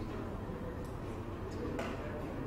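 Steady low background hum and hiss of room noise, with a few faint short clicks, the last and clearest near the end.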